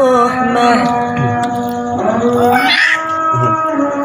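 Pujian, Islamic devotional chanting, sung from a mosque: a single voice drawing out long held, wavering notes, the line breaking briefly about three seconds in before a new note begins.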